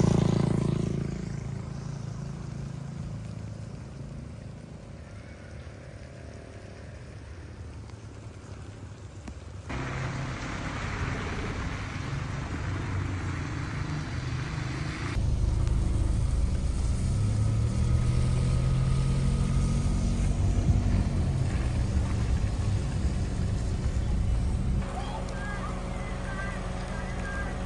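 Steady rain falling on a wet street, a noisy hiss heard across several short clips. In the later clips a loud, deep rumble runs under the rain.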